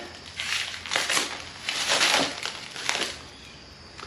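Plastic stretch wrap being slit with a knife and pulled off a wrapped metal part, crinkling in several irregular bursts that die down after about three seconds.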